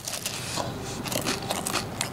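A mouthful of McDonald's apple-cinnamon pie being chewed, its crisp pastry shell crackling with many small crunches.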